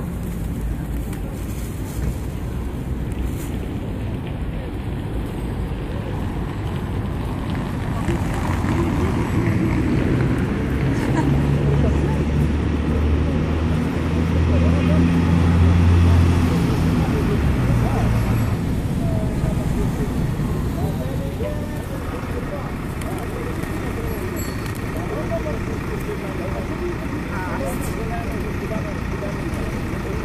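Steady city traffic noise, with a heavy vehicle's engine running louder through the middle, loudest a little past halfway, then fading away.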